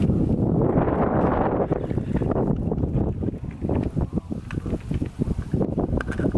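Wind buffeting a phone's microphone outdoors, a loud rumble that is strongest in the first two seconds and then comes in short, choppy gusts.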